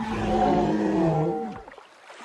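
A hippopotamus gives one loud call lasting about a second and a half, dropping in pitch near the end.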